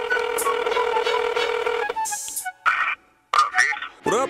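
Telephone dial tone with keypad tones pressed over it, cutting off about two seconds in; a few short bursts of sound follow.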